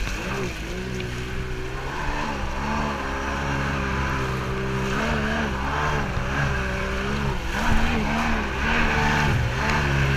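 Stand-up jet ski engine running under way, its pitch rising and falling repeatedly as the throttle is worked, with a hiss of water spray and wind. The engine is loudest about three-quarters of the way through.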